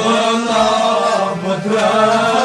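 A male vocalist singing a Kashmiri song, holding long notes that waver in pitch, over instrumental accompaniment.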